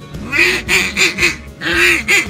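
Hand-held duck call blown in a run of mallard-style quacks: one long quack, three shorter ones, then another long one near the end, made to call in a passing duck.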